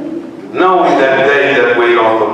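A man's voice amplified through a handheld microphone, starting about half a second in with a long, drawn-out intoned phrase that sounds close to singing.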